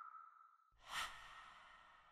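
Logo-animation sound effect: a held tone fading out, then one soft whoosh that swells about three quarters of a second in, peaks around a second in and dies away slowly.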